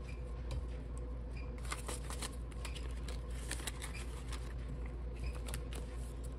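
Paper banknotes and clear plastic binder pockets rustling as they are handled, with many small flicks and clicks, over a steady low hum.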